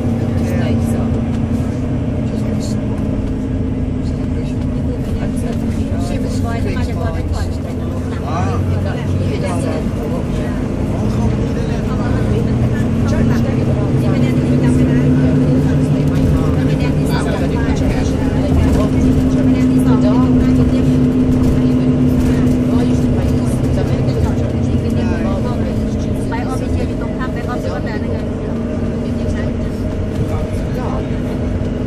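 Volvo B9TL double-decker bus's 9.4-litre six-cylinder diesel engine and driveline droning, heard inside the upper deck. Its note climbs and grows louder as the bus picks up speed about halfway through, then eases back down.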